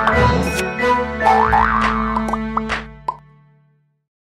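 Short logo jingle: held music notes with quick sliding-pitch sound effects and sharp clicks, fading out to silence over the last second.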